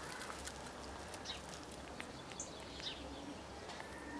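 Faint outdoor ambience: a few short, high bird chirps scattered through it, over a low steady rumble.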